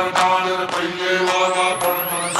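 Electronic dance music in a breakdown: a sustained chant-like chord with no bass, and a rising sweep that starts about a second in.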